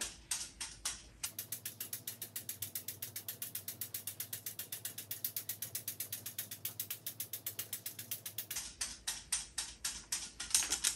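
Sling psychrometer whirled by hand, its thermometer frame clicking on the handle's pivot about once a turn in a quiet, even rhythm. From just over a second in until near the end the clicks come about twice as fast, around eight a second, because the footage is sped up.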